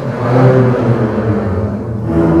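A large double bass ensemble playing low, held notes together, swelling in loudness about half a second in and then easing off.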